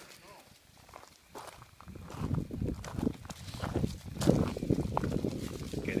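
Footsteps rustling and crunching through fallen leaves, irregular steps that start about a second and a half in, with one louder step a little after the middle.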